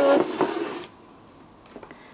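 Hands handling a cardstock papercraft trailer: a short rustle and scrape of paper with one light knock in the first second, then a few faint taps near the end.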